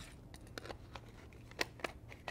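Faint scattered clicks and taps of a grease gun's metal barrel and head being handled and lined up for screwing together, with two sharper clicks near the end.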